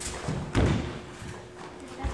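Thuds of karate students' feet landing and stamping on the floor during a kata, the heaviest about half a second in, with softer knocks around it.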